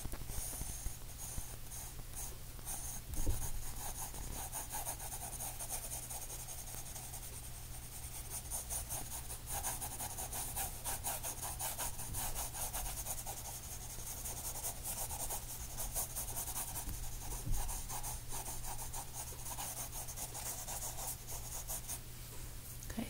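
Sketching pencil scratching across paper in quick, short, continuous strokes. There are two soft knocks, one about three seconds in and one later on.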